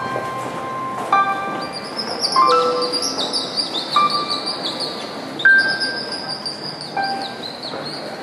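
Instrumental music: sparse single piano notes from a Yamaha stage keyboard, one about every second. From about one and a half seconds in, hanging bar chimes shimmer with quick high falling tinkles over them.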